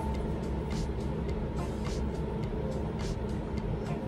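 Soft background music over a steady low rumble.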